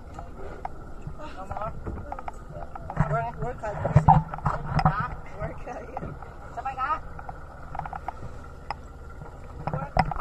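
Muffled voices talking over a steady low rumble, with scattered knocks and clanks as aluminium scuba tanks are handled on a boat deck.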